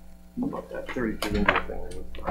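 Quiet, unrecognised talking away from the microphones, with a few sharp clinks and knocks about a second and a half in, the loudest of them near the middle.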